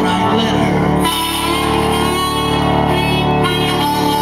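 Live solo music in a large hall: sustained chords from a keyboard instrument with a man's voice singing over them.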